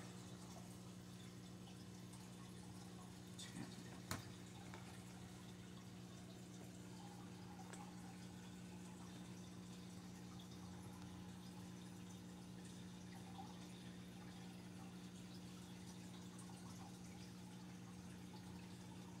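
Near silence: a steady low electrical hum of room tone, with two faint clicks about three and a half and four seconds in.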